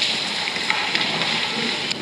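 Rustling and shuffling as a congregation stands up from the pews, a steady noise with a couple of small knocks.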